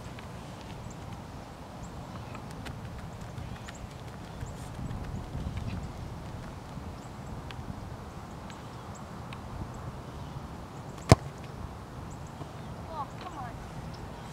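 A single sharp thud of a soccer ball being kicked hard, about eleven seconds in, over a steady low rumble.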